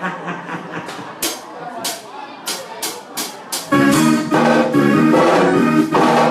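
Live band music: a run of about seven sharp cymbal-like hits over quieter background sound, then about three and a half seconds in the full band comes in loud, led by electronic keyboard with drums.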